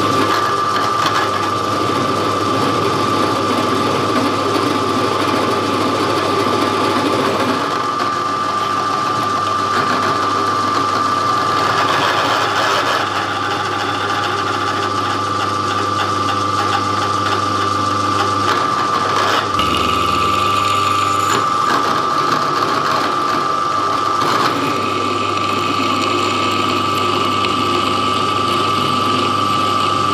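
Drill press running steadily with a constant high whine while drill bits cut into 5 mm steel plate.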